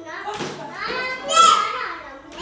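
Toddlers' voices while they play, rising to a loud, high-pitched child's cry about one and a half seconds in.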